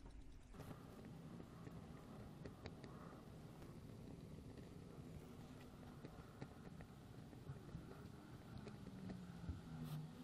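Near silence: faint background with a low hum and a few faint ticks.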